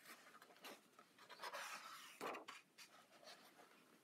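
Faint rustle and swish of a coloring book's paper pages being turned and smoothed down by hand, with a few soft swishes, the strongest a little after the middle.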